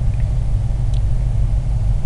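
Steady low rumble in the recording's background, with a faint click about a second in.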